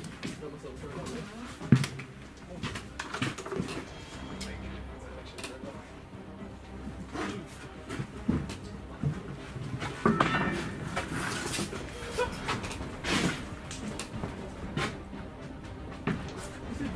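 Footsteps, knocks and rustling as people clamber over joists and debris in a building's roof space, with a sharp knock about two seconds in. Faint, indistinct voices sit underneath.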